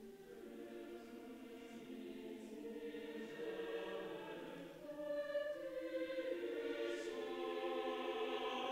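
Choral music: a choir singing long held notes in harmony, slowly swelling louder.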